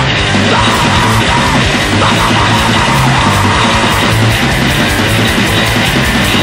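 Loud, fast powerviolence punk played on distorted electric guitar, bass and drums, with rapid drum hits packed close together.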